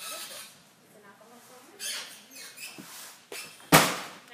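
Uneven-bars practice: faint scattered rustles and knocks as the gymnast works the bar, then one sharp, loud thud near the end, the loudest sound.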